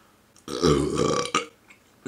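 A man burps once, a deep belch lasting about a second, letting out air to make room in a stomach stuffed with food.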